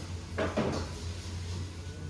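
A steady low hum with one brief, louder sound about half a second in.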